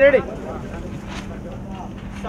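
A call of 'ready', then a low background of faint voices over a steady low hum.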